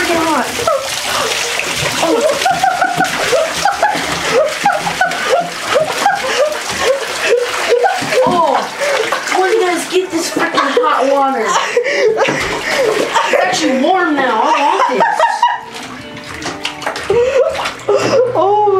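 Water splashing and sloshing in a bathtub as jugs of water are poured over a person, under continuous loud, excited voices and music.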